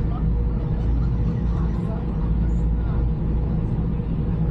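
Steady low drone and hum of a fast passenger ferry's engines, heard from inside the enclosed passenger cabin.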